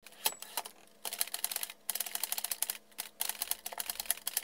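Typing sound effect: rapid runs of keystroke clicks, broken by two short pauses, over a faint hum.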